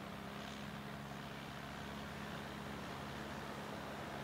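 A motor engine droning steadily at one even pitch, over a soft continuous wash of surf and wind.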